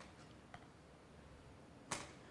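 Near silence: faint room tone, with a tiny click about half a second in and a short, sharp sound just before the end.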